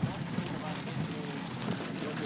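Really hard, steady rain pouring on a car's roof and glass, heard from inside the cabin as an even wash of noise.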